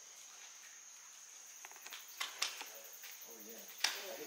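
Insects buzzing in a steady, high, even tone throughout. Three sharp clicks come in the second half, the last and loudest just before the end, and a brief low voice sounds shortly before it.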